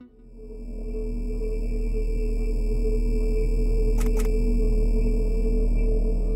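Ambient electronic soundtrack: a deep synthesized drone swells in over the first second and holds steady under several sustained higher tones, with two quick high blips about four seconds in.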